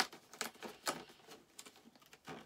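Fingers picking at and prising open a small cardboard advent calendar door: a few faint scratchy clicks and crackles, the sharpest right at the start and another just before a second in.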